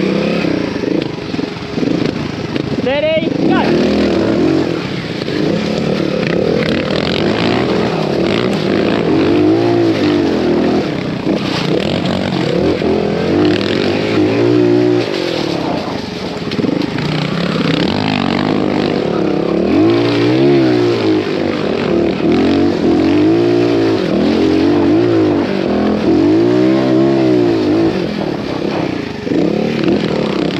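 Trials motorcycle engine blipped and revved again and again, its pitch rising and falling every few seconds as the rider works the throttle over rough ground.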